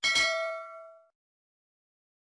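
Notification-bell 'ding' sound effect from a subscribe-button animation, struck once and ringing with several bright tones that fade out within about a second.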